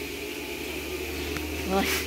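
A steady low buzzing hum throughout, with a woman's brief word just before the end.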